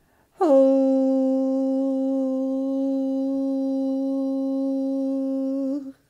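A voice holding one long hummed note. It slides down into pitch at the start, stays steady, and lifts slightly just before it cuts off near the end.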